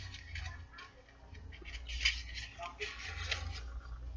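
Plastic packaging being handled as a blister pack of two e-cigarette cartridges is pulled from its box: scattered clicks and crackling rustles, busiest about two and three seconds in, over a low rumble.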